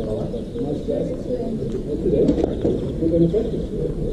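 Indistinct voices of people talking, with a pigeon cooing over them.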